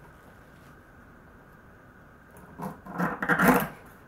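Knife blade pushed and slid down through a tough palm frond into an end-grain wooden cutting board: one cut lasting about a second, beginning a little past halfway.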